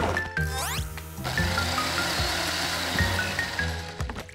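Cartoon background music with a steady whirring blender sound effect, a countertop blender running from about a second in and cutting off suddenly near the end, after a few quick rising sweeps.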